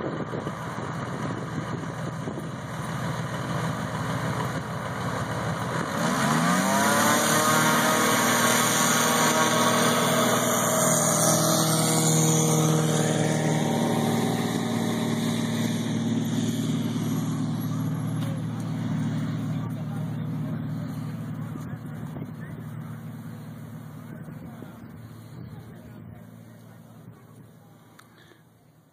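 Single-engine piston tow plane going to takeoff power on an aerotow launch. The engine note rises sharply about six seconds in and stays loud as the plane passes. It then drops in pitch and fades steadily as the plane climbs away.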